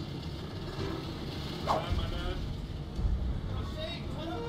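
Steady low engine and road rumble of a moving RV, heard from inside the cabin, with brief voices over it and a couple of louder moments, one near the middle and one just after three seconds in.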